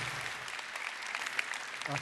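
Light, scattered applause from a large audience in a reverberant auditorium hall.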